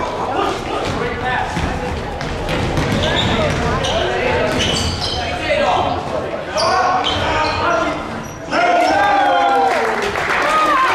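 A basketball being dribbled on a hardwood gym floor, with sneakers squeaking and players' and spectators' voices echoing through the hall; a louder shout near the end.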